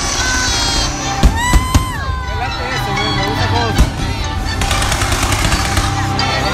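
Fireworks bursting, with a few sharp bangs between about one and two seconds in and another near the four-second mark, over loud music and voices.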